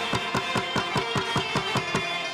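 Afghan instrumental music: a dholak barrel drum played fast with the hands, an even run of about eight strokes a second, over sustained rubab and tanbur string notes.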